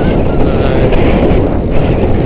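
Wind buffeting the microphone of a hand-held camera on a moving bicycle: a loud, steady low rumble.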